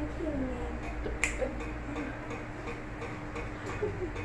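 A single sharp click a little over a second in, over a steady low hum, with a few fainter clicks.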